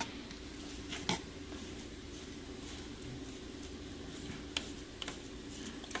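Silicone spatula scraping thick ground-peanut paste off the sides of a plastic food processor bowl, faint, with a few light taps against the bowl.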